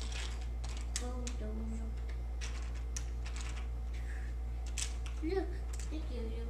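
Light, irregular clicks and clacks of wooden toy train track pieces and wooden support blocks being handled and fitted together while a toy bridge is rebuilt, over a steady low hum.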